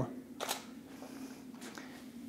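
A digital SLR camera firing its shutter once at 1/50 s, a brief mechanical click of mirror and shutter about half a second in.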